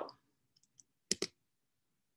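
Two quick clicks of a computer mouse button, close together about a second in, advancing the presentation to the next slide.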